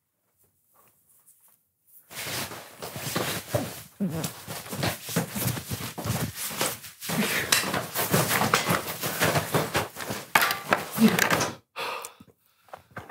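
A man pulling off a jacket: continuous fabric rustling and scuffing, with grunts and breaths of effort mixed in. It starts about two seconds in and stops abruptly near the end.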